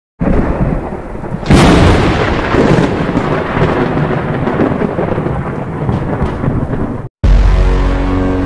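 Thunder sound effect with rain: a sudden loud crack about one and a half seconds in, then a long rumble. It cuts off shortly before the end, and a held musical chord starts.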